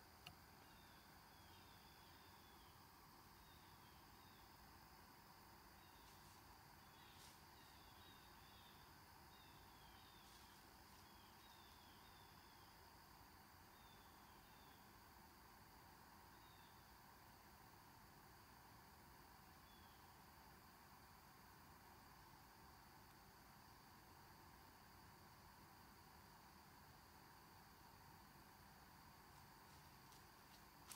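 Near silence in still woods, with faint, high, short falling chirps from a small bird, repeated in little clusters through the first twenty seconds or so.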